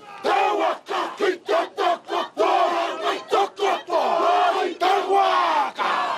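A group of Maori men chanting a haka in unison: loud rhythmic shouted syllables, about three to four a second.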